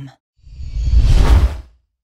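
A whoosh sound effect: a single swell with a deep rumble underneath that builds about half a second in, peaks past the middle and fades out shortly before the end.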